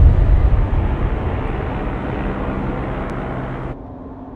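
A loud, low rumble with a wash of noise over it, like distant traffic or an aircraft over a city, fading slowly. It cuts off abruptly near the end, leaving a quieter steady low hum.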